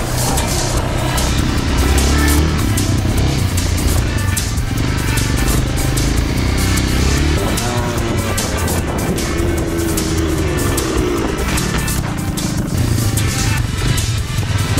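An off-road motorcycle engine revving up and easing off, with the pitch rising and falling in the middle stretch, under background music with a steady beat.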